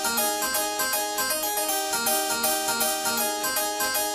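Recorded music: a harpsichord-like keyboard playing a run of evenly spaced notes, with no drums or vocals.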